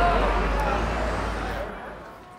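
Busy city street sound: a steady low traffic rumble with faint voices of passers-by, fading out near the end.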